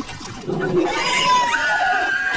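A long, shrill cartoon cry that rises in the second second and sags slightly in pitch.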